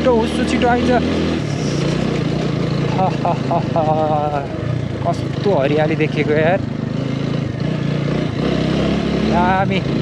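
Motorcycle engine running steadily while riding, its note shifting about a second and a half in.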